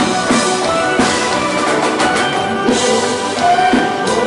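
Live konpa band playing: a drum kit keeping a steady beat under electric guitar and other sustained instrument parts, loud throughout.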